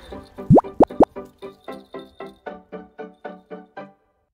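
Cartoon-style sound effect laid over the footage: three quick rising 'bloop' glides, then a rapid run of short pitched blips, about six a second, that stops near the end.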